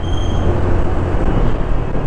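Steady wind rumble on the microphone and road noise from a Honda Beat scooter being ridden, with its small single-cylinder engine running underneath.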